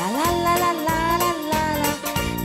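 A woman singing into a microphone over instrumental accompaniment with a steady beat: her voice slides up at the start into one long held note.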